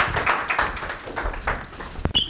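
Small audience applauding, with the hand claps thinning out toward the end.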